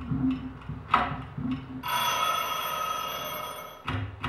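Soundtrack of irregular sharp ticks and clicks over a low hum. Just under two seconds in, a bright ringing tone with many high overtones sets in, holds for about two seconds while slowly fading, and cuts off just before the end.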